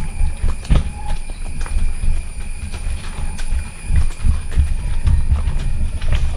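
Hooves of a ridden horse knocking on a stony dirt path at a walk, an uneven run of clip-clops over a continuous low rumble.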